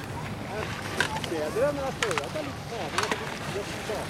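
Several people talking near the camera, voices overlapping, over a steady outdoor rumble, with a few sharp clicks.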